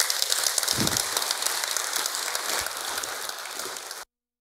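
Audience applauding steadily in a lecture room, cut off abruptly near the end.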